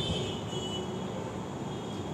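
A pause in a man's speech: steady low background noise, with no distinct event.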